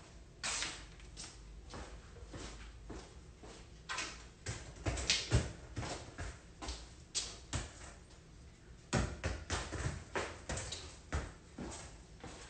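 Soccer ball being worked with quick foot touches on a concrete floor: irregular soft taps of ball and sneakers, a few a second, with a few sharper knocks.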